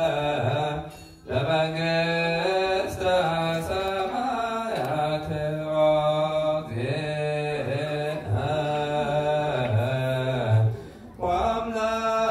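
A man chanting an Orthodox Tewahedo liturgical hymn through a handheld microphone and loudspeaker, in long held notes that bend and waver. He breaks off briefly about a second in and again near the end.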